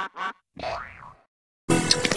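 Distorted, effect-edited audio from a Klasky Csupo logo: three short cartoonish bursts in the first second, a brief silence, then a loud, noisy sound starting near the end as the next logo begins.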